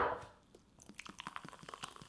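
A glass set down with a knock on a wooden counter, then faint crackling fizz as carbonated lemonade is poured into it over spherified pearls.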